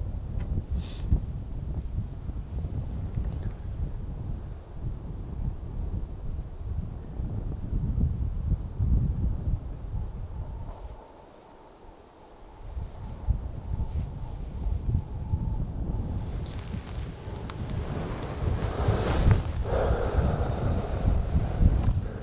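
Wind buffeting the microphone in gusts, a low rumble that drops away briefly around the middle and is joined by a brighter rushing hiss over the last several seconds.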